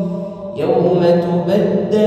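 A man reciting the Quran in a slow, melodic chant. A held note fades out near the start, and a new phrase begins about half a second in.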